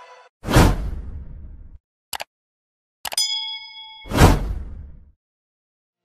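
Video outro sound effects: a sudden whoosh-hit that fades over about a second, a short double click, then a bell-like ding that rings for about a second, cut into by a second whoosh-hit.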